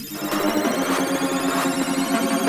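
A drum and bass track starting up in a DJ mix: the intro plays steady synth tones with no deep bass, and a high sweep rises slowly through it.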